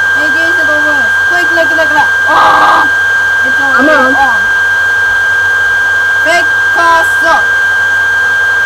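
Loud steady hiss with a constant high-pitched whine over voice-call audio, with a wordless voice rising and falling through it; a brief buzzy tone sounds about two and a half seconds in.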